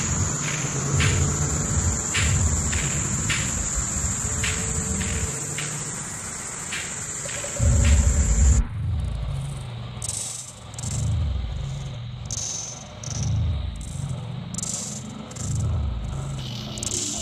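Electronic music played live on an Elektron Octatrack-style hardware groovebox: a pulsing low bass line under ticking percussion and a high, steady whine. A heavier low boom comes just past halfway, then the whine cuts off suddenly and the upper part changes to a new, choppier pattern.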